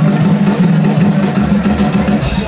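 Live band music: one low note held steadily, with little drumming.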